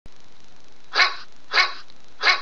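A dog barks twice, short sharp barks about a second in and again half a second later, over a steady background hiss.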